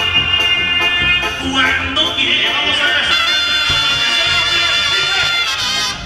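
Live banda music: trumpets playing long held notes over a steady drum beat. One held note ends about a second in, and another is held from about two seconds in until near the end.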